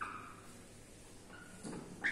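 Whiteboard duster wiping marker writing off the board, a faint rubbing with a few short squeaks.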